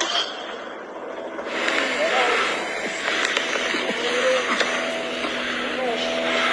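A person's voice exclaiming in short phrases over a steady hissing background noise, with a couple of sharp clicks.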